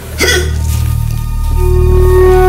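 A man's single hiccup about a quarter of a second in. It is followed by background music: a low sustained drone, with a held melody note coming in about one and a half seconds in.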